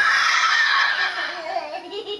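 A small child's loud, shrill squeal while being swung upside down by the ankles, trailing off after about a second into a wavering, whiny vocal sound.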